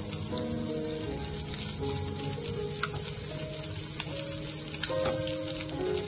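Skewers of sausage, quail egg, pepper and green onion frying in oil in a nonstick pan: a steady sizzle with scattered crackling pops. Background music plays over it.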